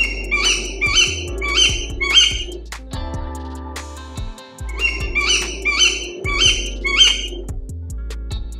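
Owl calling: four short, shrill calls about half a second apart, then the same run of four again a couple of seconds later, over background music.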